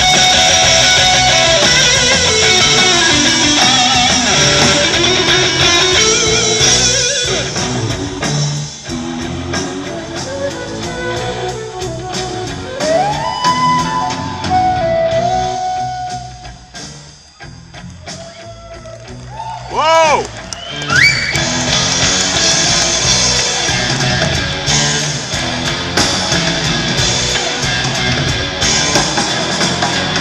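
Live rock band playing an instrumental passage: electric guitar, bass and drum kit, with a flute line. The music thins out and drops in level about halfway through, then builds back up.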